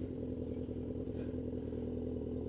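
Motorcycle engine running steadily at idle, a low even hum with no revving.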